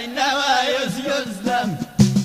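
Amazigh folk singing: a voice sings a wavering, ornamented melodic line. Near the end it slides down and fades out.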